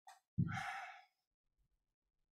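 A person's short breath, then a voiced sigh of under a second, between spoken phrases.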